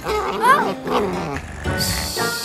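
A cartoon puppy's short vocal sound that wavers up and down in pitch, over background music. A breathy "shh" starts right at the end.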